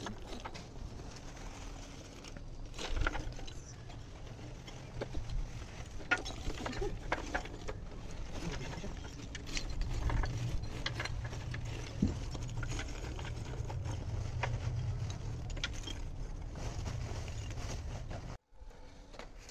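Lumps of charcoal clicking and knocking against each other as they are handled and arranged in a grill pot, with irregular clacks throughout over a steady low hum.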